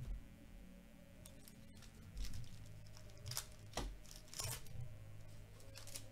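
Foil wrapper of a baseball card pack crinkling and tearing as it is opened, and the cards being handled in gloved hands: several short crinkly rustles from about two seconds in.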